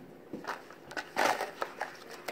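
Handling noise from a large hardcover picture book being held and tilted: a short rustle a little after a second in, then a few light clicks.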